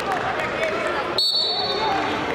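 Background voices in a wrestling hall, with a short, steady, high-pitched whistle blast a little past the middle.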